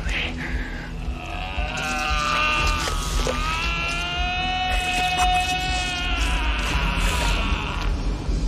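A vampire's long, high, wavering death scream that dips and rises in pitch and breaks off near the end, over a low rumble.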